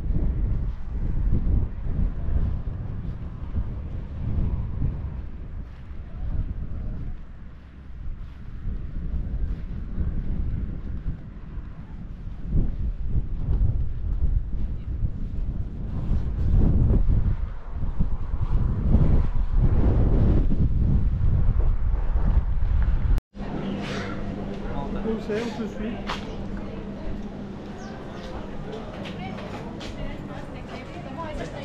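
Wind buffeting the microphone, a gusting low rumble that rises and falls. Near the end it cuts off abruptly and gives way to a street with people chatting, a steady hum and a few clicks.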